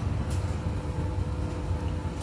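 Steady low hum of a household appliance running, with a faint steady tone over a low rumble.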